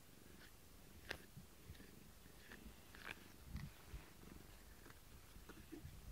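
Domestic cat purring faintly close to the microphone while being stroked, with a couple of sharp clicks, about one second and three seconds in.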